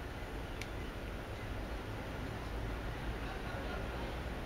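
Quiet, steady background rumble with no distinct event, apart from one faint click just over half a second in.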